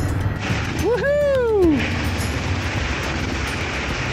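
Kawasaki KLX 230 dirt bikes' single-cylinder engines running low and slow on wet ground, under a steady hiss of heavy rain and tyre spray. About a second in, a person lets out one drawn-out call that rises and then falls.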